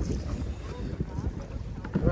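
Wind buffeting the phone microphone out on open water, an uneven low rumble.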